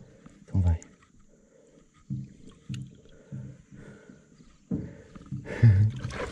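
A large peacock bass splashing in the water as it is released from the hand and swims off, starting a little before the end. Short, low vocal sounds come earlier.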